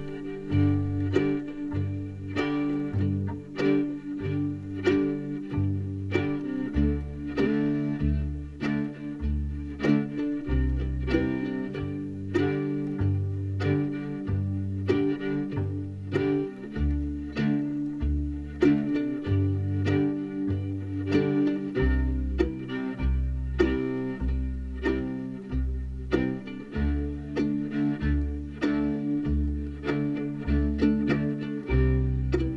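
Slow old-time backing of acoustic guitar, with a low bass note on the beat and strums between, as a fiddle bows along with it.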